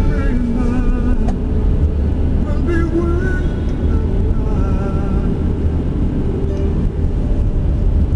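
Steady low rumble of a car's road and engine noise heard inside the cabin while driving, with music playing faintly over it.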